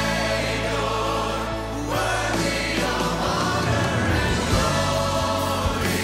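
Large church choir and orchestra performing a gospel-style worship song, the choir singing sustained chords over the orchestra.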